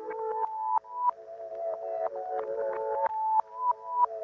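Instrumental electronic music intro with no vocals: a synthesizer plays held notes that step from pitch to pitch. Some notes swell up and then cut off suddenly.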